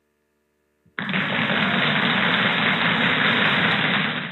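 About a second of silence, then a loud, steady rushing noise with a low rumble starts abruptly and carries on unchanged.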